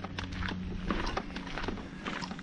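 Footsteps on a path, heard as a string of light, irregular knocks.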